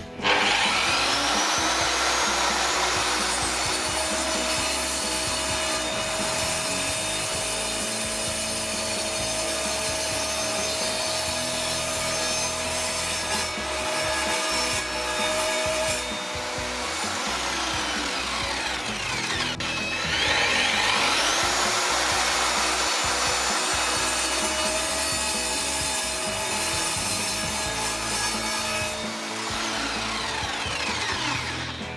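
An Evolution R210 MTS multi-material mitre saw (1200 W motor, 210 mm blade) starts with a rising whine and cuts through a thick wood-composite block, then winds down after about eleven seconds. About twenty seconds in it starts again for a second cut from the other side of the block, and it runs until near the end.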